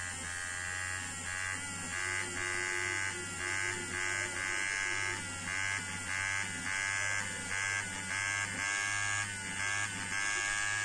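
Handheld electric eraser whirring as it erases graphite pencil on paper. Its small motor hums steadily, with the whir changing pitch and getting a little louder in short repeated stretches, about once a second.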